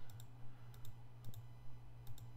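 Computer mouse buttons clicking, several short sharp clicks spread unevenly, some in quick pairs, over a low steady electrical hum.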